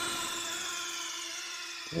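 A sustained electronic tone with many overtones, sinking slowly in pitch and fading a little. It is a sound effect laid over the edited fight clip.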